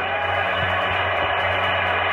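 Music from a televised football broadcast, played through a TV speaker and muffled, with nothing above the upper midrange.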